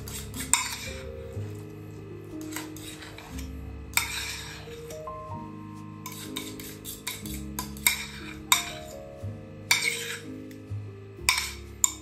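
Metal fork scraping mashed banana from one bowl into another, a series of short scrapes and light clinks of metal on the bowls, over background music.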